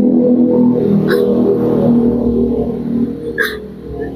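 A woman crying: a long, wavering sob broken by two sharp catching breaths, about a second in and near the end, easing off in the last second.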